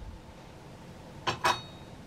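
Two sharp clinks of china teaware about a quarter second apart, the second ringing briefly, as cup and pot things are handled on a tray.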